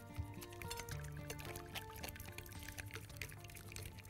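Soft background music with held notes over a wire whisk beating a runny egg-and-oil batter in a glass Pyrex dish, with light liquid sloshing and quick ticks of the whisk.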